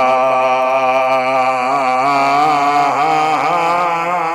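A man's voice chanting one long, held note into a microphone, the pitch wavering slightly as it is sustained.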